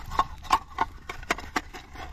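About ten light, irregular dry clicks and knocks as clods of dry, cracked mud are handled and broken apart at a dug-open frog burrow.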